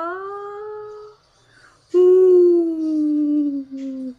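A voice holding two long drawn-out vowel cries: the first rises in pitch and fades about a second in, and the second, louder, starts about two seconds in and slowly falls.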